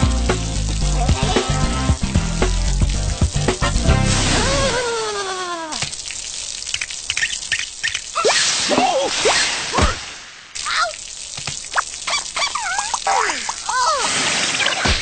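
Cartoon soundtrack: background music for about the first five seconds, ending in a falling glide. Then hissing water-spray effects, with the cartoon characters' short wordless cries and grunts over them.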